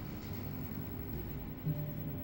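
Faint background music, video-game music from a Super Famicom game playing through the TV, holding low steady notes with a new note coming in near the end.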